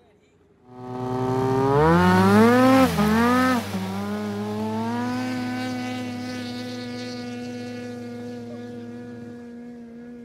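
Drag-racing snowmobile launching off the start line. Its engine revs climb sharply for about two seconds and dip briefly near three seconds. The pitch then settles to a steady note as it pulls away down the ice, slowly fading with distance.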